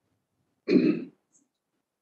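A person clearing their throat once, briefly, about two-thirds of a second in.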